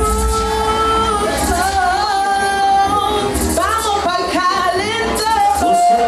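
A woman singing live into a handheld microphone over music with a deep bass. She holds long notes at first, then runs quickly up and down through several notes in the second half.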